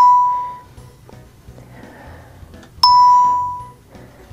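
Two electronic chimes from the ProStitcher longarm quilting computer, each a single clear ding that fades within about a second, one at the start and one about three seconds in. Each chime marks a point being recorded while a design area is traced by hand.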